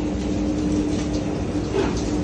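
Commercial kitchen machinery running with a steady hum over a low rumble.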